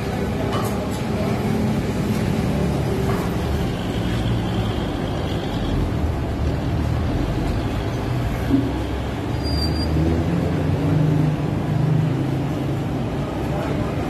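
Low, steady engine rumble of road traffic, swelling about ten seconds in as a heavy vehicle runs close by.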